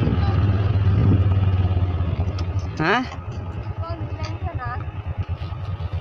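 Small motorcycle engine running under steady throttle, then dropping to a lower, uneven putter about two and a half seconds in as the throttle is eased.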